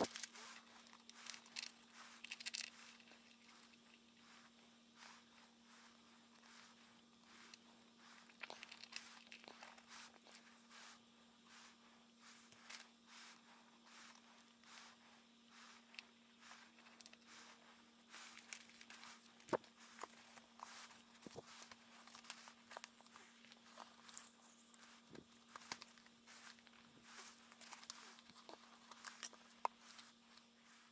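Faint handling sounds of a book being worked over newspaper: scattered small clicks and light rustles as glue is spread into the hinge with a wooden skewer. A steady low hum runs underneath.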